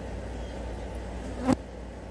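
Flies buzzing close by, with one brief sharp click about one and a half seconds in.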